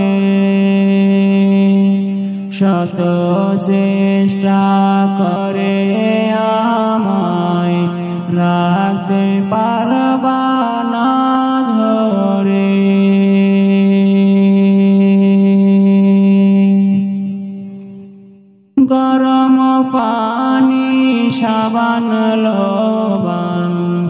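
Wordless, chant-like interlude of a Bengali Islamic gazal, with long held notes that step and bend between pitches. It fades away about 17 seconds in and comes back abruptly about two seconds later.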